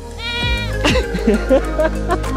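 A goat bleats once, briefly, over background music with a steady beat.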